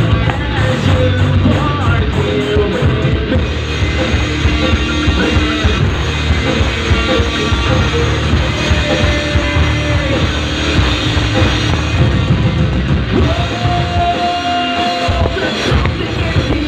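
Live rock band playing loudly: distorted electric guitars, bass guitar and drum kit, with a singer's voice over them, including a long held note near the end.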